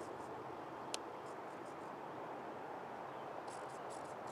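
Faint, steady outdoor background noise with one sharp click about a second in and a few faint ticks near the end; no motor is running.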